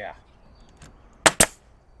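Pneumatic brad nailer firing a 1¼-inch brad into pallet wood: a sharp double crack about a second in. This is a test shot after backing off the depth adjustment, and it sets the brad at the wanted depth.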